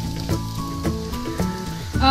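Oil sizzling steadily under pieces of stuffed wheat-flour pitha shallow-frying in a pan, heard beneath background music with a simple melody of held notes.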